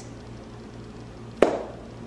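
A single sharp hand clap about one and a half seconds in.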